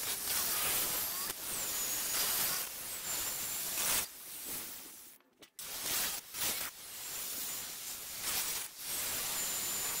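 Small angle grinder with a thin cutting disc cutting through an air conditioner's copper pipes, a high whine that sinks a little in pitch as the disc bites, with the hiss of the cut. The cutting stops for a moment about five seconds in, then starts again on the next pipe.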